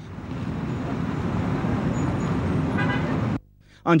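Street traffic: cars running and passing, with a short car-horn toot about three seconds in. The sound cuts off suddenly at about three and a half seconds.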